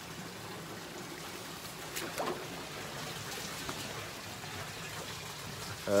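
Spring water trickling steadily, with a couple of faint knocks about two seconds in.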